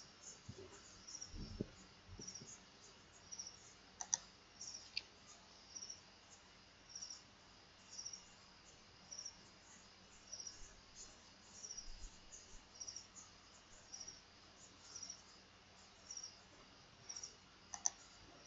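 Faint cricket chirping in a steady rhythm, each chirp a quick run of high pulses, with one sharp click about four seconds in.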